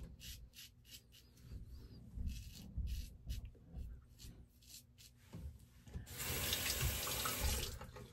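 Faint, short scraping strokes of a stainless steel safety razor across lathered stubble, one after another, then a tap running steadily for about two seconds near the end.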